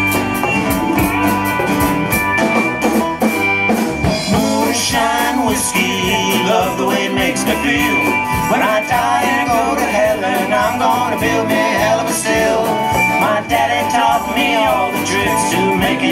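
Live band playing an instrumental country-rock passage on guitars and drums. A lead line bends up and down through the middle.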